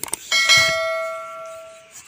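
Notification-bell sound effect from an animated YouTube subscribe button: a short click, then a bright bell ding that rings on, fading, and is cut off abruptly near the end.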